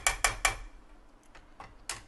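A plastic slotted spatula knocks against the side of a metal pan as thick korma gravy is stirred. It makes a quick, even run of clicks, about five a second, that stops about half a second in, then a few fainter scattered taps.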